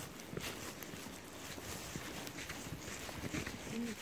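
Footsteps in snow: an uneven series of steps.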